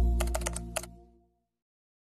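Computer keyboard typing sound effect: a quick run of about five clicks in the first second, over the fading tail of a deep bass note.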